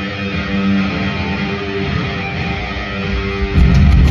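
Live rock band playing: an electric guitar riff over bass guitar, with no vocals. About three and a half seconds in, the full band comes in louder and heavier in the low end.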